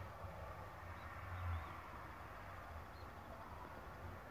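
Faint outdoor background: a low steady rumble that swells briefly about a second and a half in, with two or three short, faint bird-like chirps.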